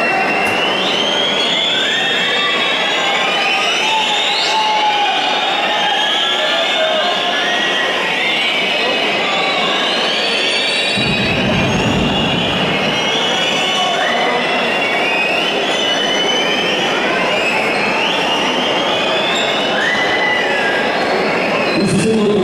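Basketball arena crowd din with many overlapping whistles sliding up and down in pitch, kept up throughout, and a brief low rumble about eleven seconds in.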